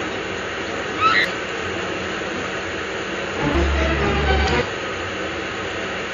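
Steady low machinery hum filling the room. About a second in comes a short voice-like cry, and from about three and a half to four and a half seconds brief muffled voices sound over a low rumble.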